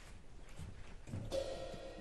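Faint instrument sounds from a jazz big band between tunes, with a held pitched note coming in a little over a second in.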